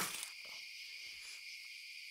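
Steady night chorus of crickets chirring. A few faint rustling sounds in the first second or so die away, leaving only the insects.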